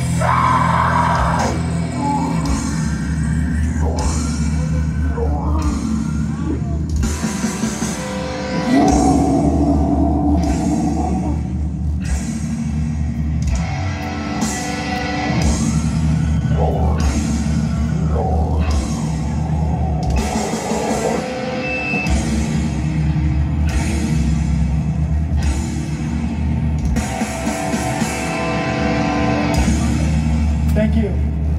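Loud live heavy rock music in a metalcore/post-hardcore style: distorted guitar, bass and drums, with a vocalist singing into a handheld microphone over them.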